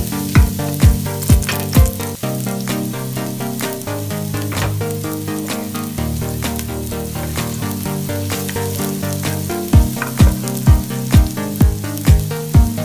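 Minced garlic sizzling in hot oil in a pot, under background dance music. The music's kick drum beats about twice a second, drops out about two seconds in and comes back near the end.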